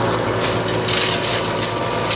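Shovels or rakes scraping and crunching through crushed stone, over the steady running of an excavator's engine.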